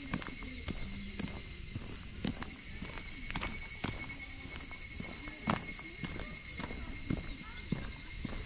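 Footsteps on asphalt at a walking pace, a run of short sharp steps, over a steady high-pitched insect chorus from the surrounding trees.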